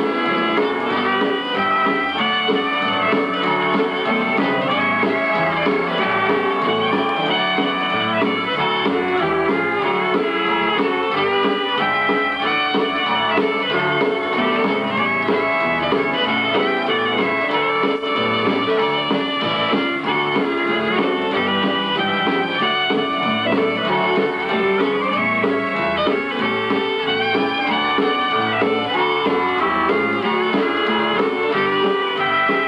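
Western swing band playing live, led by several fiddles bowing together, with guitar and drums.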